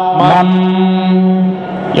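Male voice reciting the Veda in the repetitive ghana pāṭha style: a short syllable, then one long note held at a steady pitch that drops away near the end.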